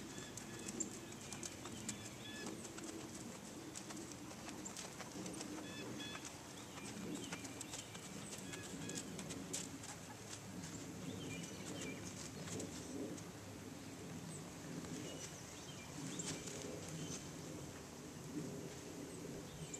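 Birds calling in short, scattered chirps over a low, steady background noise, with a few sharp clicks.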